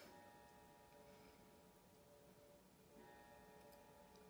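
Faint chime of a clock, a set of ringing tones that sound as it opens, fade, and sound again about three seconds in, with a few faint ticks.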